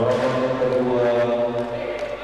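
A man's voice suddenly holding one long chanted call on a steady pitch for about a second and a half, then fading.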